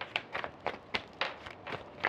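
Tarot cards being handled and laid out, a series of light, irregular clicks and taps.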